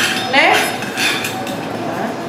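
Stainless steel tray and utensils clinking as food is handled, with voices in the background.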